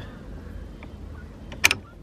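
A single sharp click about three-quarters of the way through as a wooden gaff halyard block and its metal shackle are handled at the mast, over a low, steady background.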